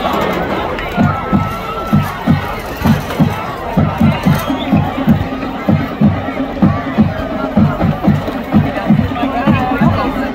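A marching band's drums beating a steady low pulse, about two to three beats a second, starting about a second in, with a held band note joining about halfway, over crowd chatter.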